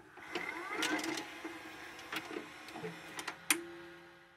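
Sound effect of a VHS tape deck playing: mechanical clicks, a motor whirring up in pitch during the first second, and tape hiss. A short steady tone comes in near the end before it all fades away.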